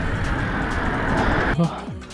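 Wind rushing over the action camera's microphone, with tyre noise, as a mountain bike rolls fast down a paved road; the rush cuts off suddenly about one and a half seconds in.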